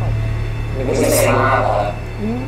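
Voices over a low, steady drone from the drama's background music, with a brief louder vocal outburst a little under a second in.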